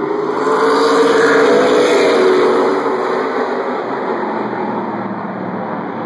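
A pack of short-track stock cars racing around the oval at full throttle, their engines merging into one loud drone. The sound swells as they pass closest, about one to two and a half seconds in, then eases off.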